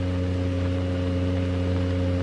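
Steady low electrical hum with several fixed overtones, unchanging throughout, on an old film soundtrack.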